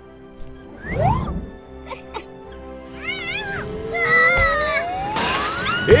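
Cartoon sound effects over light background music: a quick rising whoosh about a second in, warbling whistle-like tones in the middle, and a long smooth rising whistle glide near the end as a bowling ball is thrown and flies up into the air.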